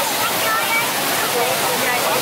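Ground-level fountain jets spraying onto wet pavement: a steady rush of falling water, with the high voices of children and a crowd chattering over it.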